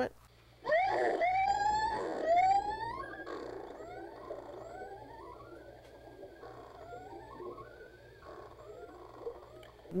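Recorded adult male killer whale call played back from a computer. A loud rising call with a little wavy, warbling pitch fills the first couple of seconds. A string of fainter, shorter rising whistles follows, repeated over and over.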